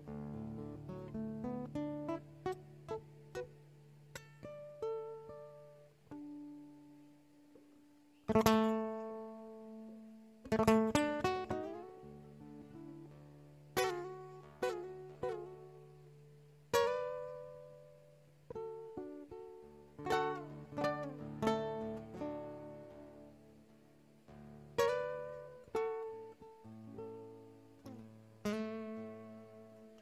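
Solo nylon-string classical guitar played fingerstyle: a melody over held bass notes, broken from about eight seconds in by loud, sharply struck chords every few seconds that ring out and fade.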